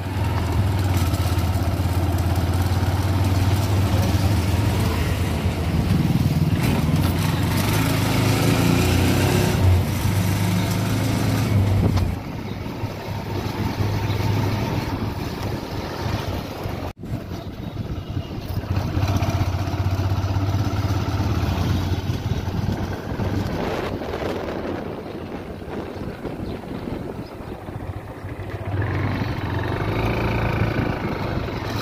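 A vehicle's engine running with wind and road noise, heard from on board while driving along a road. The sound drops out for an instant about 17 seconds in.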